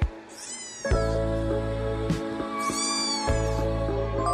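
A kitten meowing twice, two high-pitched calls that rise and fall, the first about half a second in and the second around three seconds in, over background music.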